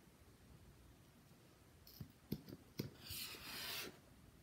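Faint handling noise from a mascara tube and wand: a few small clicks and taps, then about a second of soft rushing noise near the end.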